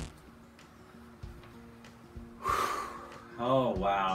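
A short, breathy rush of noise about two and a half seconds in, like a man's audible breath on a clip-on microphone, followed by the man starting to speak; before that, only faint background tone.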